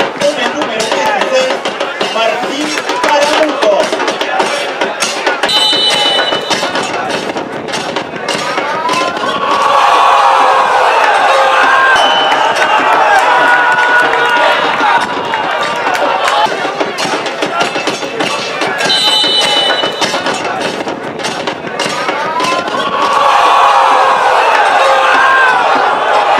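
Football match broadcast sound: stadium crowd noise and shouting voices celebrating a goal, swelling twice into long drawn-out shouts.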